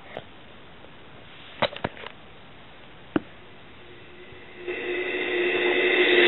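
A few light taps as the iPad is worked, then music from the iPad's built-in speaker fading in over the last second or so as a song starts in the iPod app.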